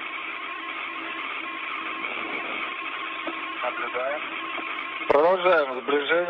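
Steady hiss of an open space-to-ground radio channel, with a faint constant hum under it. A crew voice comes over the radio about five seconds in.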